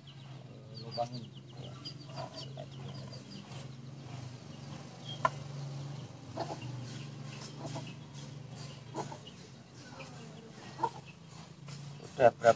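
Hands scooping and dropping loose soil mix into a bonsai pot, with faint crackling and scattered small clicks, over a steady low hum. Short chicken clucks come and go every few seconds.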